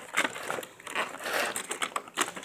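Clear plastic packaging tray crinkling and clicking as a die-cast toy car is worked out of its moulded slot by hand.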